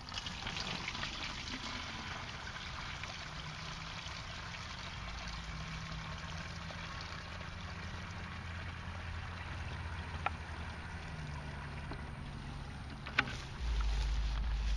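Lake water poured from a plastic 5-gallon bucket through a cloth pre-filter into another bucket: a steady splashing trickle, heaviest in the first couple of seconds. Two small knocks come late on.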